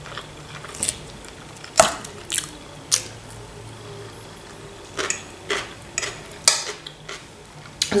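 Person eating: quiet chewing with a scattered series of short sharp clicks from the mouth and a metal fork against a ceramic plate, the sharpest about two seconds in.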